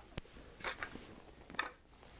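Faint handling sounds as a hi-hat controller pedal is lowered and set in place on the floor: one sharp click just after the start, then soft rustles and light taps.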